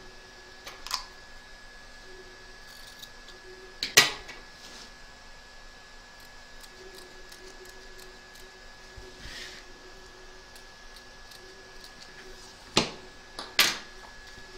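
A few sharp clicks and taps from a plastic embroidery hoop being turned and handled and small pinch-action scissors snipping fabric, the loudest click about four seconds in and two more near the end, over a faint steady hum.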